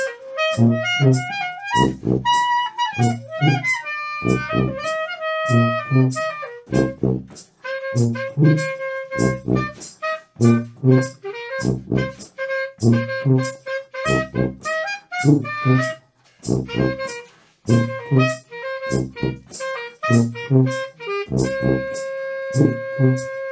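Small jazz band playing: a wind-instrument melody with sliding notes over a steady, evenly pulsing bass line and regular percussion hits.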